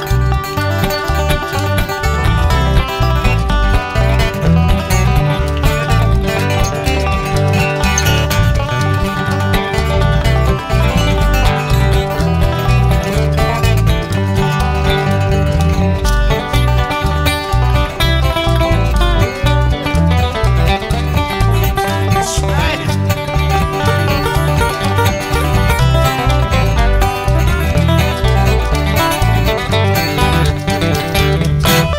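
Live bluegrass band playing an instrumental break at a brisk tempo: banjo and acoustic guitars picking over a pulsing upright bass.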